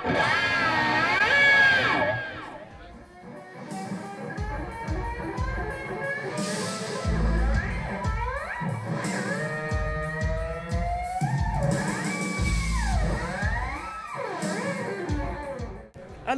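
Electric guitar through a pitch-shifting effect in octave-up mode, its notes sliding up and down to imitate cats meowing. After a short dip a band with drums and bass comes in under more sliding guitar lines.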